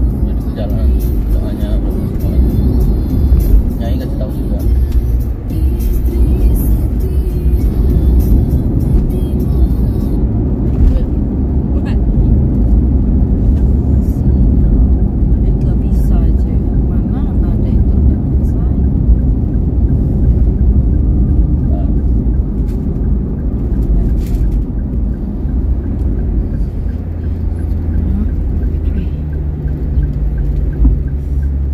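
Inside a moving car's cabin: a steady low rumble of road and engine noise, with music and indistinct voices mixed in.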